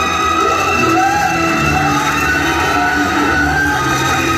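Music with long held notes and a melody that slides up and down in pitch.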